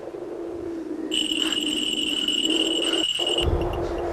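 Horror soundtrack: a low steady drone, with a shrill high-pitched electronic tone added about a second in and held for a little over two seconds. The tone cuts off suddenly as a low rumble comes in.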